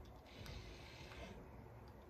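Faint hiss of a L'Oréal Steampod 3.0 steam flat iron clamped on a thick section of hair. The hiss fades out about halfway through and returns near the end.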